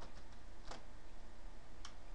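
Two isolated computer keyboard keystrokes about a second apart, over a faint steady low hum.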